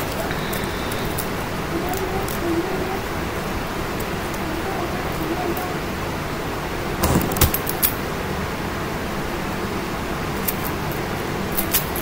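Light handling sounds of a ribbon being tied onto a teddy bear bouquet: scattered small clicks and rustles over a steady hiss. The loudest cluster of clicks comes about seven seconds in, and more clicks follow near the end as scissors are picked up.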